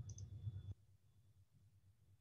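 Low, fluttering background rumble from an open microphone, with a couple of faint clicks, that cuts off suddenly under a second in and leaves near silence.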